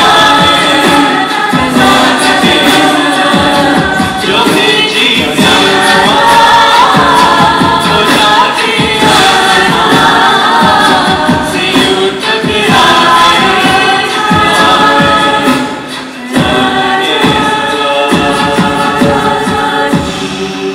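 A women's a cappella group singing in harmony into handheld microphones, with a rhythmic pulse under the voices. The sound dips briefly about four seconds before the end.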